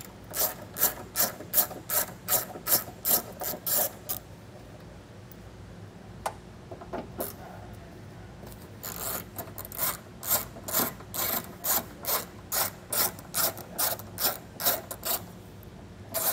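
Hand socket ratchet on a long extension clicking at about three clicks a second as it backs off 10 mm flange nuts. There is a pause of a few seconds in the middle, then the clicking resumes.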